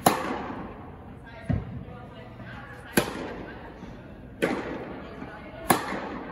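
Tennis ball struck back and forth by rackets in a rally, five sharp hits about a second and a half apart, each ringing on in the echo of an indoor tennis hall.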